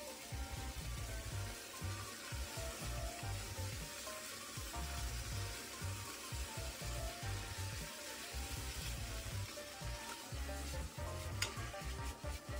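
Pork belly slices sizzling as they fry in a non-stick pan with onions and carrots, stirred with a spatula, with a sharp tap near the end.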